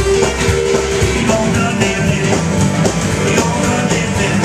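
Live rockabilly played by a duo: electric guitar over upright bass, with a foot-pedal kick drum keeping a steady beat.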